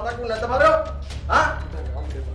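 Short wordless cries from a man's voice, one sharp rising yell about a second and a half in.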